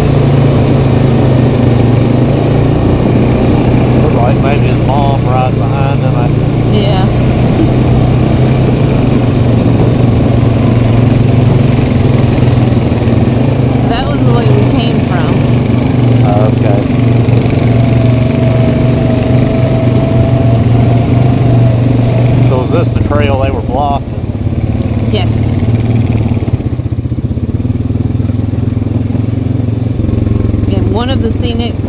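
ATV engine running steadily under way at trail speed, heard from the rider's seat. The engine sound dips and shifts in character about three quarters of the way through.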